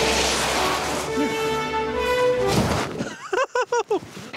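Rushing noise of a runaway home-built toboggan sliding fast through snow, with snow spraying as the riders bail off, over background music with held notes. The rush cuts off about two and a half seconds in, and a voice-like, pitched sound follows near the end.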